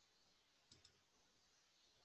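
Near silence, with two faint clicks close together about three-quarters of a second in: a computer mouse button pressed and released.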